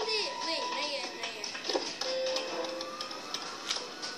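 Music with voices over it, a film's soundtrack playing.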